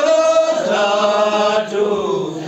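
A group of people singing together, holding long drawn-out notes in a slow chant-like song, with a brief dip in loudness near the end.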